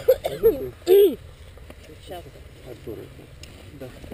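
People talking, loudly for about the first second, then quieter with only faint voices and a low steady hum.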